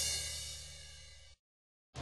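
The show's theme music ends on a final chord that rings out and fades steadily, then cuts to dead silence about a second and a half in.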